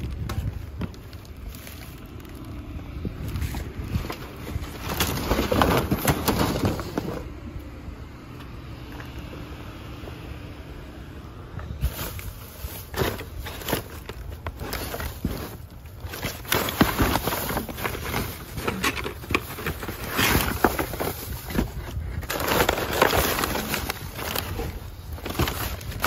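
Plastic bags and trash rustling and crinkling as they are rummaged through by hand, busier in the second half, over a steady low rumble.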